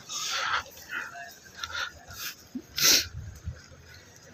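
An animal calling in about five short, sharp sounds spread over a few seconds. The loudest comes about three seconds in.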